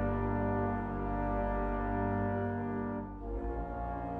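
Background music of held, brass-like chords that shift to a new chord a little after three seconds in.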